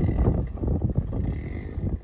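Wind buffeting the microphone: an uneven, gusting low rumble with no steady pitch.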